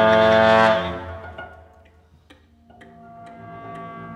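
Orchestral music: a loud sustained brass-led chord cuts off under a second in and rings away. Scattered light taps and soft held tones follow.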